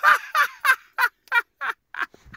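A man laughing hard: a run of loud "ha" bursts, about three a second, each falling in pitch, tapering off in loudness.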